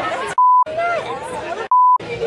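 Two short censor bleeps, each a steady single-pitched beep about a quarter of a second long, blanking out words: the first comes under half a second in, the second near the end. Between them a voice is talking.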